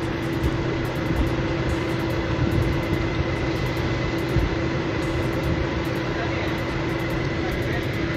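Idling vehicle engine, a steady, unchanging hum with a faint constant whine above it.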